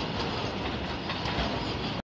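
A freight train of loaded flatcars rolling past at close range. It makes a steady rolling noise with faint wheel clacks over the rail joints.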